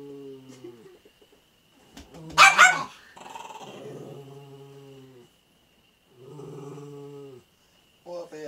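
A small dog growling at another dog in long, steady, low growls of a second or two each, broken by one loud, sharp bark about two and a half seconds in.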